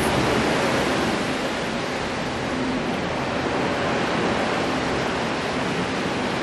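Steady, loud rushing noise with no distinct events or changes.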